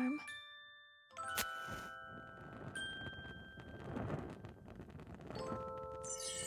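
A match struck about a second and a half in, a sharp scratch and a brief hiss as it flares. Soft chiming music notes ring under it, and a gentle swell of noise follows around the middle.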